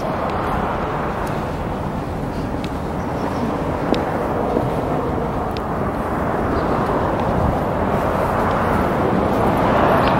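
Steady outdoor rushing noise, like wind or distant traffic, that swells toward the end, with a few faint clicks.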